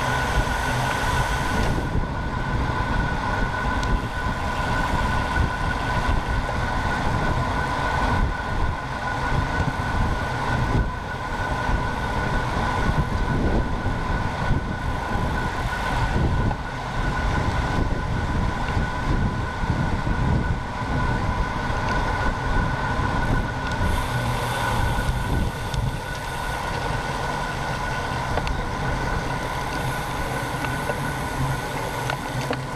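Wind buffeting a bike-mounted action camera's microphone at road-race speed, mixed with tyre and road noise, with a steady high whine running underneath.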